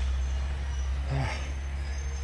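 Steady low engine rumble of a bulldozer working some way off, with a man's brief "uh" about a second in.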